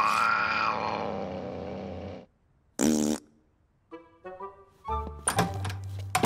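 A cartoon cat's angry yowl, lasting about two seconds, followed by a short second cry just before the third second. After that come a few quick musical notes and sharp clicks from the cartoon score.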